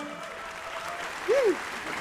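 Studio audience applauding as the band's last held chord dies away. About a second and a half in, one voice gives a short rising-and-falling call over the clapping.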